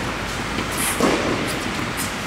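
Tennis ball struck by a racket about a second in, a single hit ringing in a large hall, over a steady, loud rumble of background noise.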